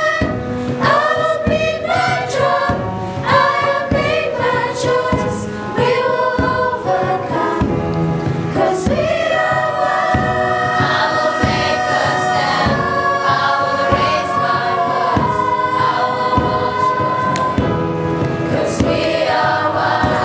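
A children's school choir singing in parts, shorter notes at first, then long held notes from about nine seconds in.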